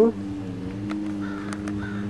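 A steady low hum with a couple of level tones, over which come a few faint short bird calls and light clicks.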